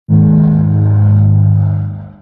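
Logo-intro sound effect: a loud, steady low hum with several even tones stacked above it, fading out near the end.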